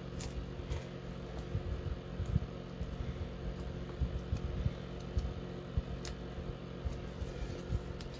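Small, irregular clicks and light rustles of paper being handled as foam adhesive dimensionals are peeled from their backing and pressed onto a cardstock greeting piece, over a steady low hum.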